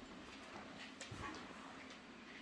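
Faint, irregular taps and knocks of a West Highland white terrier nosing a ball across a laminate floor, its claws clicking on the floor.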